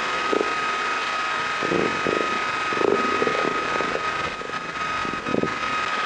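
Ambient drone in an experimental electronic track: a steady, rushing noise bed with a thin, high sustained tone that stops near the end, and soft low swells rising and falling in it.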